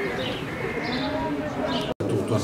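Birds chirping in short repeated calls over indistinct voices of people talking outdoors; the sound cuts out abruptly just before the end.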